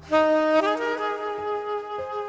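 Smooth-jazz soprano saxophone music. A loud sustained note comes in sharply just after the start, then the melody steps upward through a few notes between half a second and a second in.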